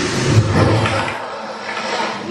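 Show sound effect in a wand shop: a rushing, rattling noise over a low rumble, like shelves of boxes shaking, dying down about a second in.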